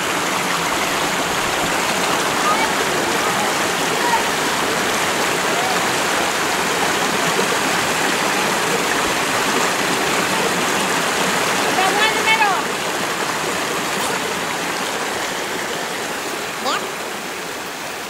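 Creek water rushing and splashing over boulders in small cascades, a steady loud rush that eases slightly near the end.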